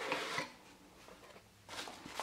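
Cardboard shipping box being opened by hand: a short scrape and rustle of the cardboard lid at the start, a quiet pause, then more rustling of the packing near the end.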